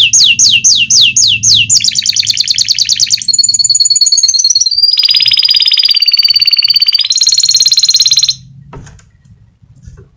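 Domestic canary singing a long song made of rapid repeated-note trills, each phrase at a new pitch and speed: first falling sweeps about six a second, then faster rolls, then a high, steady, rattling trill. The song stops near the end, leaving a faint click.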